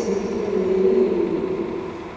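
A woman's voice over the church's sound system, held on long, nearly level tones as in chanting a text, with the hall's echo.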